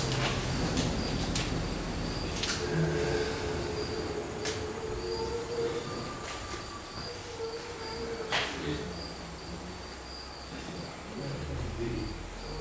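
A cricket chirping in a steady high-pitched pulse over quiet room noise, with a few soft clicks.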